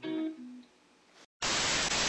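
A few soft plucked guitar notes dying away, then after a short silence a loud, even burst of TV-static hiss used as a glitch transition, cutting off abruptly.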